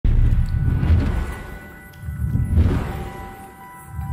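Cinematic logo-intro music: deep rumbling hits that fade away, one at the start and another about two and a half seconds in, under a few held high tones.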